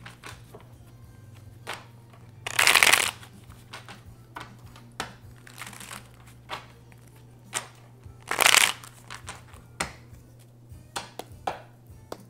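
A deck of tarot cards being shuffled by hand: two short bursts of shuffling, about two and a half seconds and eight seconds in, with light taps and slides of the cards between them.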